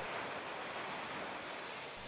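Gentle surf washing onto a sandy beach, a soft, steady hiss of small waves.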